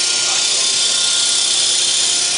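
Corrugated-board single facer and its plant running: a steady, even hiss with a low hum of a few fixed tones beneath it.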